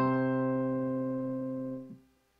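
Piano playing a two-part bass-and-treble harmonic dictation exercise: a two-note chord, one low bass note and one higher treble note, held and slowly fading, then released near the end.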